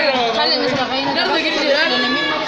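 Voices chattering, several people talking over one another.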